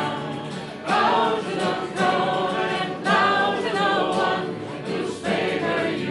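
Live singing of a bardic song, the voices carrying on in phrases with short breaks between them.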